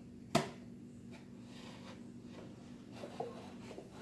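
A single sharp tap of a hand against a bookshelf board about a third of a second in, then a few faint handling sounds, over a faint steady hum.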